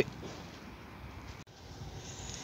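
Faint steady background noise with no distinct event in it, broken by a brief dropout about one and a half seconds in where the recording is cut.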